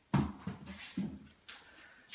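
Twine being pulled out and stretched across a frame of denim insulation: soft rustles and light knocks, with a small click about one and a half seconds in.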